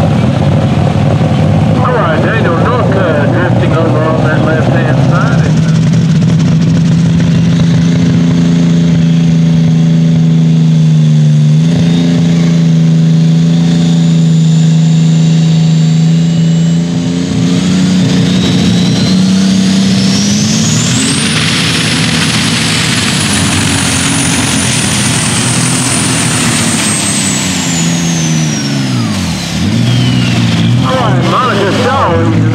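Turbocharged diesel engines of super stock pulling tractors: the first runs at a steady, high speed, then a second revs up with a rising high turbo whistle that holds near the top, then winds down as the engine drops off near the end. A voice over the PA is heard briefly early on.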